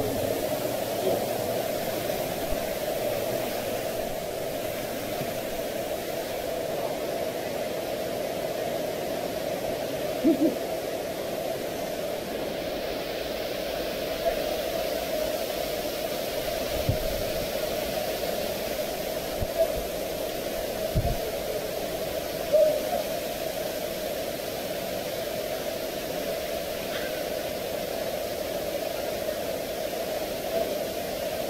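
Stream water rushing over rocks in a narrow rock canyon: a steady rushing noise with a strong humming band in the low middle. A few soft thumps come about halfway through.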